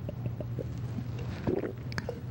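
A man drinking from a plastic water bottle: small gulping and swallowing clicks, then a louder crackle about one and a half seconds in, over a steady low hum.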